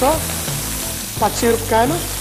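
A tempering of garlic and curry leaves sizzling in hot oil in a frying pan. Background music with a melody plays over it, its melodic line coming in about a second in.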